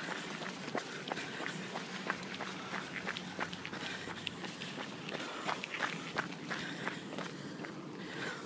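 Brisk footsteps on asphalt pavement: a quick, irregular run of light clicks and scuffs, several a second.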